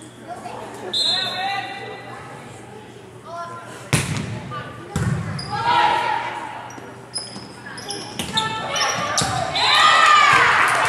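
Volleyball bounced twice on a hardwood gymnasium floor, about a second apart, each a sharp echoing smack. Players and spectators call and shout around it, the voices growing louder near the end.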